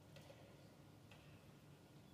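Near silence: room tone with two faint clicks.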